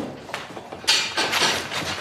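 A sudden, loud, noisy scuffle about a second in that fades away within a second, typical of cattle hooves scrabbling on a barn floor strewn with straw.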